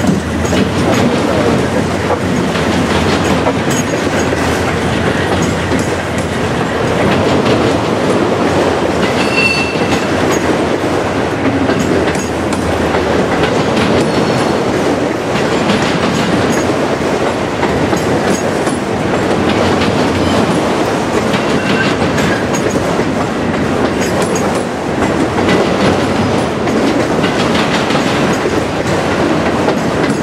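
Freight train of autorack cars rolling past close by: a steady rumble with the clickety-clack of wheels over the rail joints. A few brief, faint wheel squeals, the first about nine seconds in.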